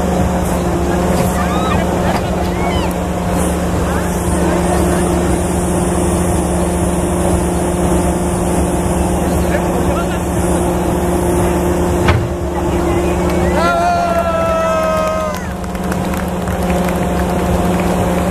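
CAT hydraulic excavator's diesel engine running steadily as the boom and bucket are worked. A sharp knock comes about twelve seconds in, and near the end a high, slightly falling tone is held for about a second and a half.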